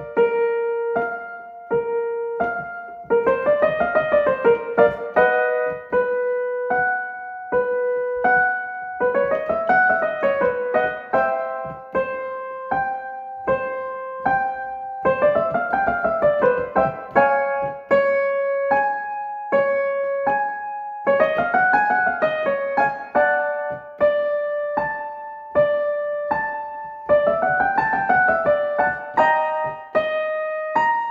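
Piano playing a vocal warm-up accompaniment: a quick up-and-down run followed by held notes, repeated about every six seconds and moving a step higher each time, for a slur exercise.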